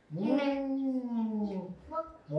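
A man's long, drawn-out 'mmm' of enjoyment with a mouthful of food. The pitch rises at the start, then slides slowly down over nearly two seconds.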